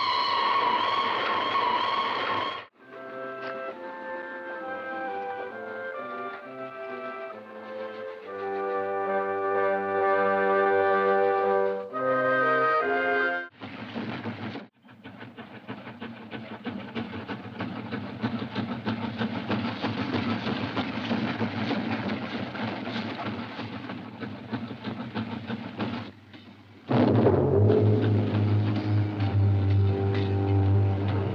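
A steam locomotive whistle sounds for the first two and a half seconds, then orchestral film music plays for about ten seconds. A steam train then passes close by, a long rushing noise of exhaust and wheels that grows louder for about ten seconds, and loud brass music comes in near the end.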